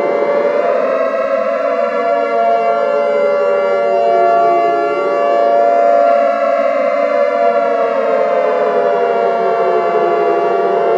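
Civil defence warning siren wailing with more than one tone sounding at once. The pitch climbs to its top about a second in, sinks slowly, climbs again about six seconds in and sinks again, over a steady held tone.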